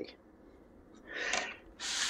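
A person breathing audibly close to the microphone: a soft rush of breath about a second in, then a sharper, higher sniff near the end.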